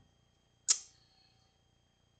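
A single sharp click a little under a second in, dying away quickly.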